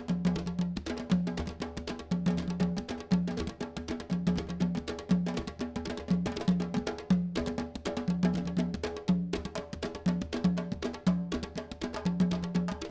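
Candombe drumming on four tamboriles, barrel-shaped wooden drums each played with one bare hand and one stick. The rhythm is dense and steady, with sharp, crisp strokes over short low drum notes that recur in a repeating pattern.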